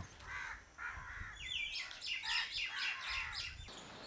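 Birds calling outdoors: a run of short, repeated calls, joined by higher, quicker chirps after about a second and a half.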